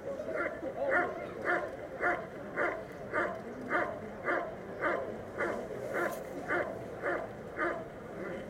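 German shepherd dog barking steadily at a trial helper, about two evenly paced barks a second. This is the hold-and-bark guarding of a protection-work trial.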